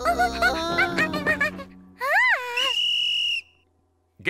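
Quick cartoon music notes, then a short rising-and-falling glide, then a referee's whistle blown in one steady high blast of under a second. The blast calls time on the event.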